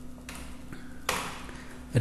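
Low-level room noise with a faint steady hum and two soft hissing sounds, a weak one about a quarter second in and a louder one about a second in.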